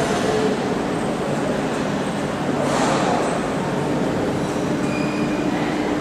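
Von Roll MkIII monorail train starting to pull out of the station, a steady running noise with a brief hiss about three seconds in and a low, even hum coming in shortly after as it gets under way.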